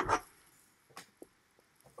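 Brief handling noises: a short knock at the start, then a light click about a second in, with near quiet between.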